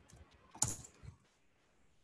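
A handful of keystrokes on a computer keyboard, typing in short spurts, the loudest about half a second in.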